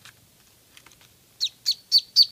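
Newborn Muscovy duckling peeping: a quick run of three loud, high peeps, each sliding down in pitch, starting about one and a half seconds in. A few faint taps come before it.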